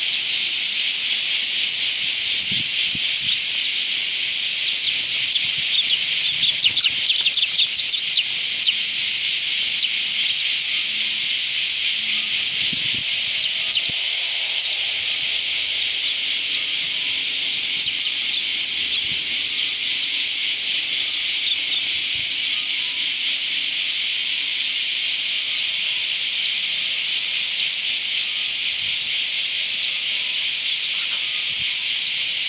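Loud, steady, high-pitched shrill drone of a summer cicada chorus, with a brief fluttering rustle about seven seconds in.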